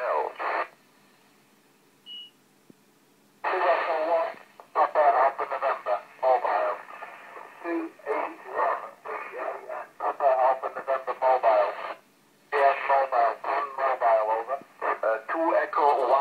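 Amateur radio voice traffic heard through a Yaesu FT-817 receiving FM on the 10-metre band at 29.620 MHz, the output of a repeater: stations calling in turn, with the thin, narrow sound of radio audio. The talk breaks off about a second in, a short high beep sounds in the pause, and speech comes back a few seconds in.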